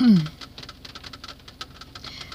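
A rapid, irregular patter of faint small clicks, after the tail of a spoken 'um' at the start.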